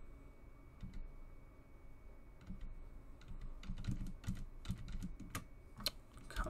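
Computer keyboard keystrokes: a couple of single key presses, then a quicker, irregular run of key taps from about two and a half seconds in, as a query line is undone and retyped.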